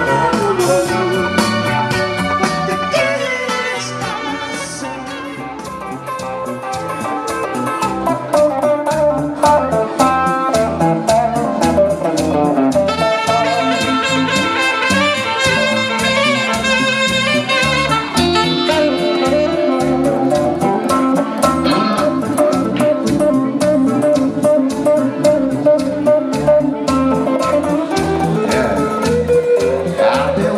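Live band music: a saxophone and an electric guitar playing an instrumental tune over a steady drum beat.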